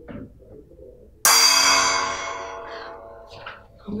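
A single gong strike about a second in, ringing and fading over a couple of seconds, the signal for the round to begin.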